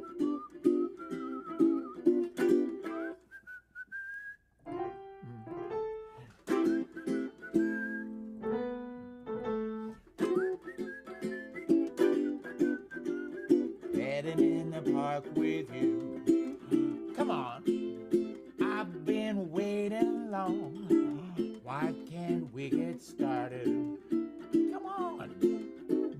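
Resonator ukulele strummed in a swing rhythm with a whistled melody over it; a few seconds in the strumming stops for a short passage of piano notes, then the ukulele comes back in under a wavering whistled line.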